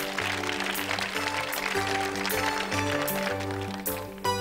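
Instrumental passage of a mid-1980s pop song: a synthesizer keyboard playing sustained chords over a pulsing bass line, with a steady beat about every two-thirds of a second.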